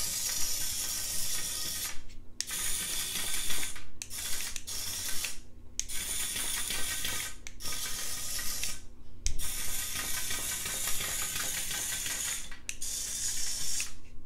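Remote-controlled toy larva's small gear motor running with a ratchety mechanical rattle as its segmented body wriggles along, stopping briefly several times as the control button is released.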